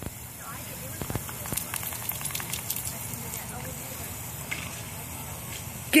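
Lawn sprinkler spraying water: a steady hiss with scattered crackling spatter, thickest in the first few seconds as the spray breaks against the dog.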